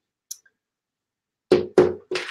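Two quick knocks about a second and a half in: a hand patting a sheet of paper flat against a whiteboard. Otherwise near silence, with one faint tick early.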